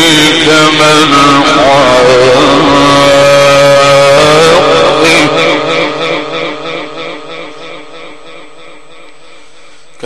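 A man's voice, amplified through microphones, chanting Quran recitation in long, ornamented, wavering melodic phrases. From about five seconds in, the held note trails away and fades over the last few seconds.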